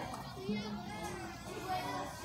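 Faint chatter and calls of children and spectators at a youth baseball field, with a low steady hum underneath from about half a second in.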